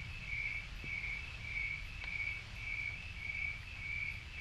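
A cricket chirping in an even rhythm, a little under two high chirps a second, over a faint low rumble.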